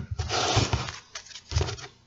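A man laughing in short, breathy pulses, with a shorter burst about one and a half seconds in.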